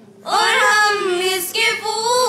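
Group of schoolgirls singing a school song in unison, coming in together after a short pause about a quarter second in, with a brief break for breath midway.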